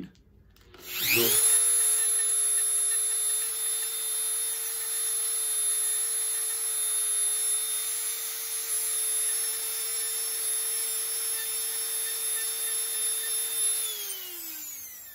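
Dremel rotary tool with a sanding drum spinning up with a rising whine about a second in, then running at a steady high pitch while a small tulsi-wood bead is sanded against it to round its sharp corners. It winds down with a falling whine at the very end.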